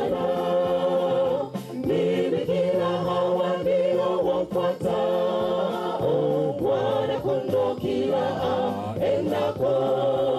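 Mixed choir of women and men singing a church song together in parts, with one woman's voice carried on a handheld microphone.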